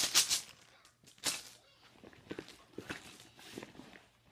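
Marbles rattling as they are shaken, dying away within the first half-second, then one short shake about a second in and a few faint clicks and knocks.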